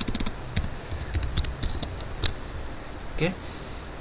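Computer keyboard keys clicking as a password is typed, a handful of short sharp keystrokes over a low steady hum.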